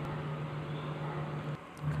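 A steady low hum with a faint hiss of room noise, dropping out briefly near the end.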